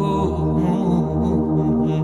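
Background music: a slow, sustained chanted vocal line with drawn-out held notes.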